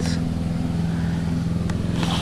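An engine running at a steady, unchanging speed: a low, even hum with a fast pulse.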